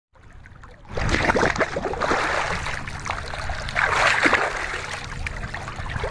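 Water splashing and swirling around a person standing chest-deep in a flowing creek, starting about a second in and carrying on unevenly.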